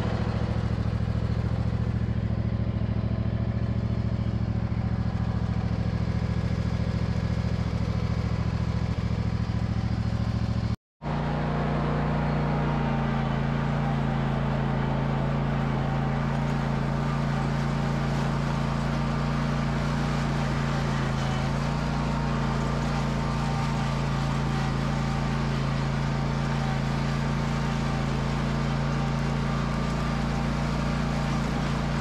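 Husqvarna MZ52 zero-turn mower's engine running steadily as the mower drives along, a constant low drone. There is a brief break about eleven seconds in, after which the engine note is slightly different.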